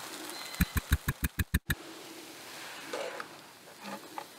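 A quick run of about eight thumps, speeding up slightly over about a second, about half a second in. Under it, the faint steady sizzle of a grilled cheese sandwich frying in a small pan over a solid-fuel Esbit stove.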